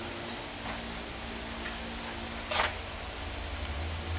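A steady low hum with a brief rustle about two and a half seconds in and a few faint ticks.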